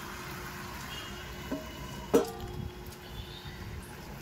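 Steady rain falling, an even hiss, with a sharp knock about two seconds in.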